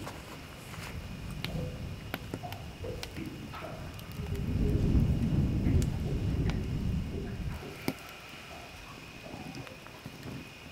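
Wood fire crackling in a fire pit, with sharp scattered pops. A louder low rumble rises about four seconds in and fades out by about seven and a half seconds.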